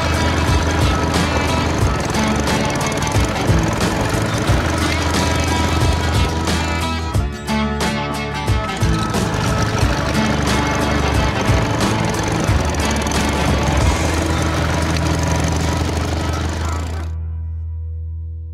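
Small petrol lawn mower engine running steadily as a cartoon sound effect, mixed with background music. The music drops out about a second before the end, leaving the low engine drone fading.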